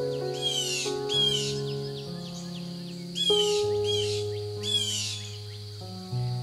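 Slow, soft piano music with low held bass notes, mixed with harsh, raspy bird calls: two near the start and three more around the middle.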